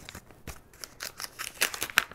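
Paper envelope being handled and opened by hand: quiet at first, then a quick run of crisp paper crinkles and ticks from about a second in, the sharpest near the end.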